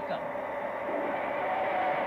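A car on the road, heard as a steady rush, with a high tire squeal starting about a second and a half in as it begins to skid.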